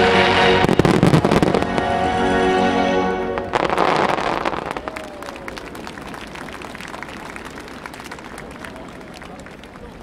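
Fireworks display set to music: sustained chords with heavy shell bursts over them, the music ending about three and a half seconds in with one last loud burst. A dense crackle of many small pops follows and fades away.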